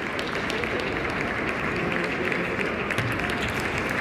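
Table tennis rally: scattered light clicks of the celluloid-type ball on bats and table over a steady wash of sports-hall noise from other matches and spectators.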